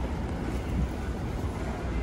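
Steady low rumble of city street traffic, with no single distinct event standing out.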